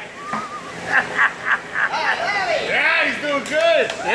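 Men whooping and laughing: a run of short laughs about a second in, then several rising-and-falling whoops near the end.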